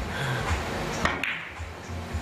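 A cue strikes a carom billiard ball, then just after a second two sharp clicks follow as the balls collide. The cue ball takes the object ball too full, the thickness error the commentary points out.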